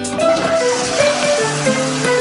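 Background music with a toilet flushing under it: an even rushing noise that starts at the beginning and carries on throughout.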